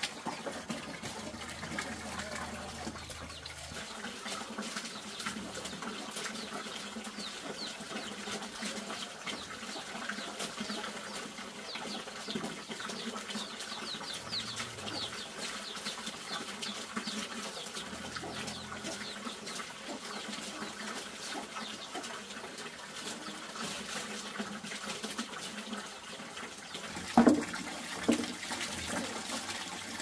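Steady running, trickling water with small clicks and splashes. Near the end come two loud, short pitched sounds, about a second apart, falling in pitch.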